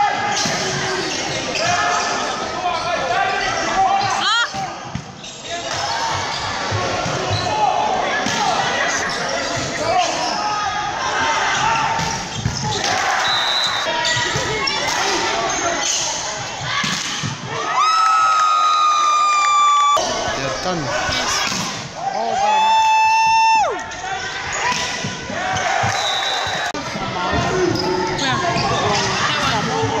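Sounds of an indoor volleyball rally in a sports hall: the ball struck and bouncing, players and spectators shouting, and sharp impacts throughout. Two long held tones stand out past the middle.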